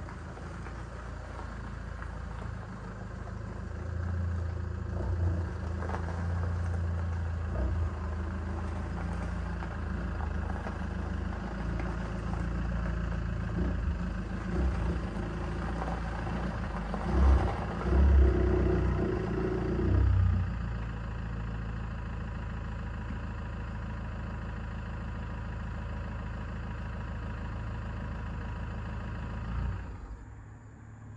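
A car engine running as vehicles are manoeuvred across a gravel yard, with a few louder revs between about 17 and 20 seconds in, then settling to a steady idle.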